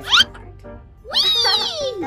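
A meow sound effect about a second in, rising then falling in pitch for most of a second, over steady background music. Just before it, at the start, there is a quick rising chirp effect.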